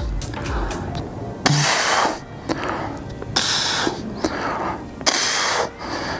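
A man breathing hard while straining to hold a plank: three loud, breathy exhales, each about half a second long, coming every second and a half to two seconds.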